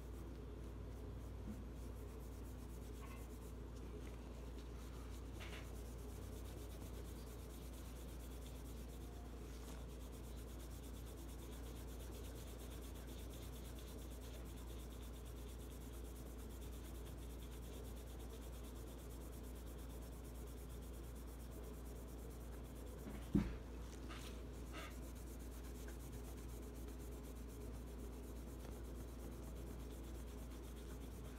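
Polishing cloth rubbed softly back and forth over the bare steel slide of a Taurus 709 Slim pistol, buffing in metal polish: a faint, steady rubbing over a low hum. A single thump about two-thirds of the way through, followed by a few light ticks.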